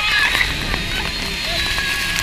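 Roar of a waterfall pouring down on an open tour boat, with spray and wind beating on the microphone and passengers' voices shouting and whooping over it.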